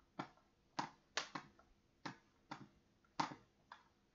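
A series of light, sharp clicks, about nine in four seconds at uneven intervals.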